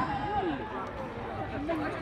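Distant voices of football players and onlookers calling out across the pitch, over a low background murmur.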